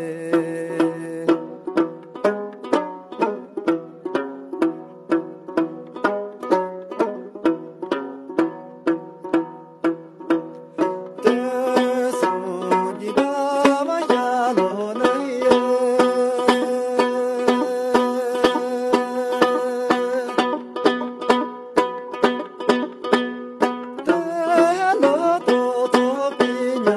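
Man singing a Himalayan folk song while strumming a Tibetan long-necked lute (dranyen) in a quick, steady rhythm. The voice stops about a second in, leaves the lute playing alone for about ten seconds, then comes back with long held notes over the strumming.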